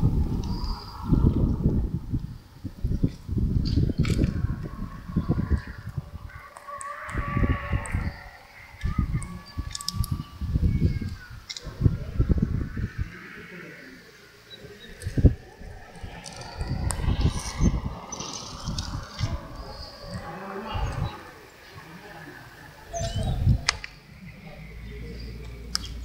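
Outdoor ambience: gusts of wind rumbling on the microphone, coming and going every second or two, with scattered bird calls and chirps.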